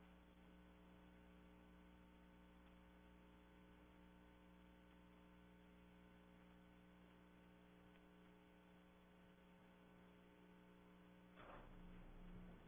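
Near silence: a steady electrical mains hum, with a brief faint noise near the end.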